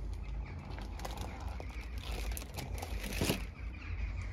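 Cardboard box flaps being pulled open by hand: rustling, crinkling and scraping of corrugated cardboard, with one louder scrape near the end as the box comes open.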